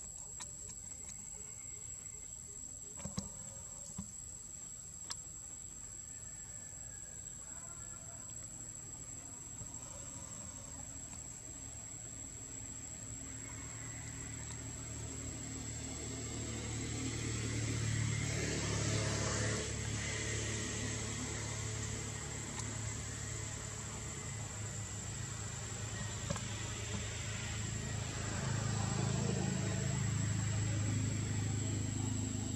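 Outdoor ambience: a steady high-pitched insect drone. A low rumble of a passing motor vehicle swells about halfway through and again near the end. A few sharp clicks come a few seconds in.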